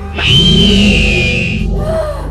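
Horror film score: a loud, high shrill stinger, falling slightly in pitch over about a second and a half, swells over a steady low droning music bed.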